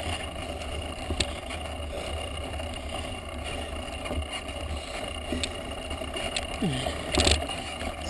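Mountain bike climbing a rough dirt track, heard from a camera mounted on the bike: a steady rumble of tyres and wind with a few sharp clicks and rattles from the bike over bumps. The exhausted rider makes a brief breathy vocal sound near the end.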